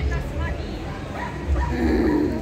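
A dog yipping and whimpering in a few short, high calls, over a low rumble.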